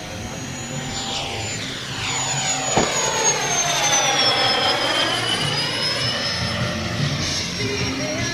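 E-flite Habu 32x model jet's 80 mm nine-blade electric ducted fan whining at high power as the plane makes a fast pass. The high whine drops in pitch as the jet goes by and is loudest around the middle.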